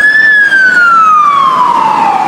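Fire-engine siren wailing: one long tone that rises briefly, then falls steadily in pitch.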